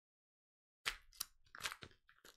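Gift wrapping being torn and crinkled off a parcel by hand. The sharp crackles and tears start a little under a second in, after dead silence.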